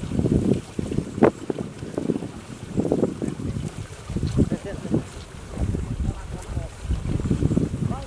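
Wind rumbling and buffeting on the microphone in irregular gusts, with indistinct voices murmuring.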